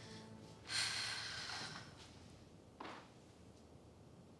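Background music fading out, then a loud breathy huff from a person, about a second long, and a shorter, fainter breath near three seconds.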